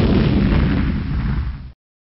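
Explosion-like boom sound effect with a deep rumble, fading over about a second and a half and then cutting off abruptly.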